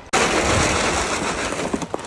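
Dry feed pellets poured into a feed pan, a dense, steady rattle of many small pellets hitting the pan that starts abruptly and dies away just before the end.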